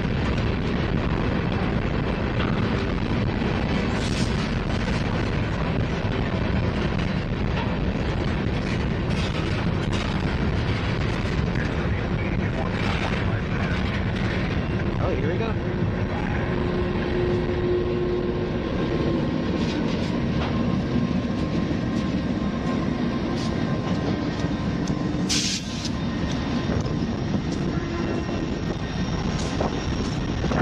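Covered hopper cars of a freight train being shoved slowly past, steel wheels rolling and clattering on the rails, with heavy wind noise on the microphone. A sharp knock sounds about 25 seconds in.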